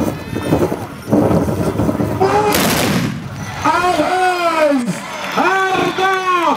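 The massed volley of Tbourida horsemen's black-powder muskets, fired together in one short crack-and-rush about two and a half seconds in, after the noise of the galloping charge. After it come drawn-out voices calling out.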